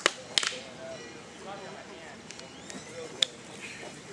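Rattan sparring sticks striking, sharp cracks: two at the very start, a quick double clack about half a second in, and a single crack a little after three seconds.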